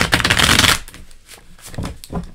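A deck of tarot cards being shuffled: a fast, loud run of card flicks for just under a second, then a few softer card clicks and a light knock near the end.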